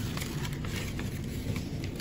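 Sheet of paper being handled and folded, giving faint rustles and a few soft crinkling ticks over low room noise.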